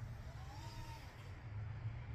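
A low, steady hum with a faint whine that rises and falls in pitch about half a second in.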